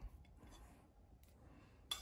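Near silence: quiet room tone with a few faint clicks and one sharper click near the end.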